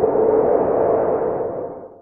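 Electronic logo sound effect: a swelling synthetic hum with a steady low tone under a wash of noise, fading out near the end.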